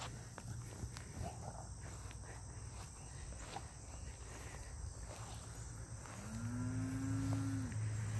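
A cow mooing once: a single long call near the end that rises, holds and falls, over a steady low hum.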